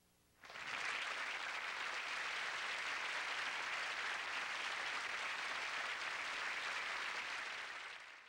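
Theatre audience applauding steadily, starting abruptly about half a second in and tapering off near the end.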